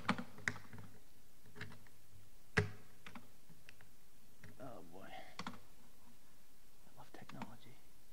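A few sharp clicks and taps from hands working a device on a lectern, picked up close by the lectern microphone, the loudest about two and a half seconds in. Brief faint voice sounds come around the middle and near the end, over a low steady hum.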